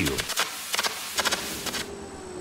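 Irregular crackling of steel being welded in a fabrication shed. Near the end it gives way to a steady high insect drone.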